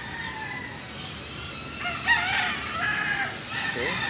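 A rooster crowing, with a crow that rises and bends in pitch about two seconds in.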